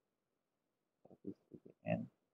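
About a second of silence, then a few brief, low mumbled vocal sounds from a person at a microphone, the last one a little louder.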